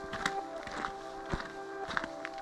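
Footsteps on a dirt and gravel trail, about two a second, over soft background music of steady held notes.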